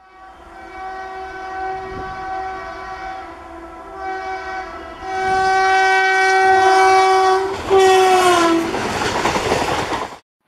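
Indian Railways electric locomotive horn sounding in several long blasts as the train approaches, getting louder. About eight seconds in the horn's pitch slides down as the locomotive passes, and the noise of the passing train takes over.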